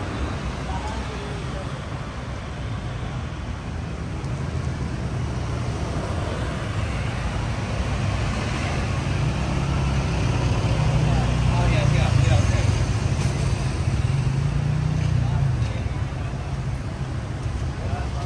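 Street traffic with cars and motorbikes passing close by. A vehicle's engine hum grows louder from about eight seconds in, is loudest around twelve seconds, and fades by about sixteen seconds. Passers-by's voices mix in.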